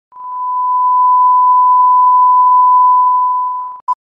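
Video countdown leader: a steady, single-pitch test tone lasting about three and a half seconds, then one short countdown beep near the end.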